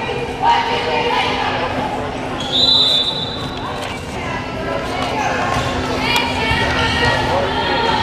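Crowd chatter and mixed voices in a gymnasium during a volleyball timeout, over a steady low hum. A short, shrill high tone sounds about two and a half seconds in.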